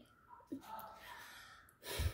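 A girl's faint, drawn-out breathy sigh, then a short sharp intake of breath near the end.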